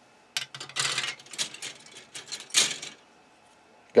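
Plastic model-kit sprues being handled and swapped: a run of light plastic clicks, clacks and rustles lasting about two and a half seconds.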